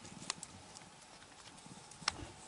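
A few soft clicks and taps with a faint low rustle, the sharpest click about a third of a second in, from a Sphynx mother cat moving and grooming on a blanket beside her kitten.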